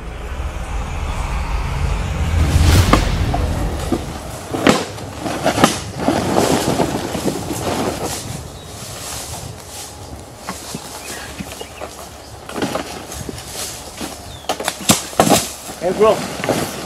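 A deep rumbling swell builds for about three seconds and cuts off about four seconds in. Then comes rustling and crunching in dry leaf litter, with several sharp snaps and cracks of sticks as people move about on the forest floor.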